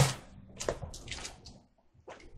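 Pages of a Bible being turned by hand: a sharp paper rustle at the start, then a few quicker, softer flicks that stop shortly before the end.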